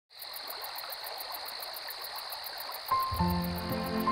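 Night chorus of insects and frogs: a steady high trill with a fast, even pulsing above it. About three quarters of the way through, music with sustained notes comes in over it.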